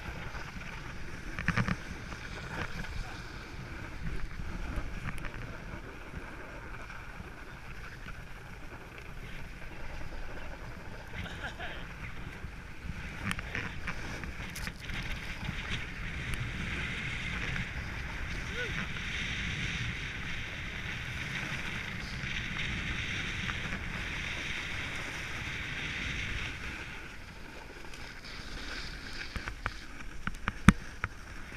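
Snowboard sliding and carving over packed snow, a steady scraping hiss that gets louder and harsher in the middle stretch, with wind buffeting an action camera's microphone underneath.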